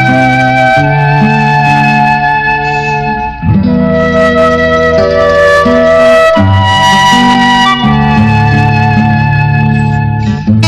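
Instrumental music of a Tamil film song with no singing: a sustained melody line over held chords and a moving bass. The phrase breaks off briefly about three and a half seconds in, then the next phrase begins.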